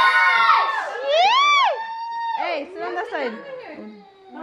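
Several people's voices talking and calling out over each other in a room, with one high voice rising and falling in a drawn-out exclamation about a second in.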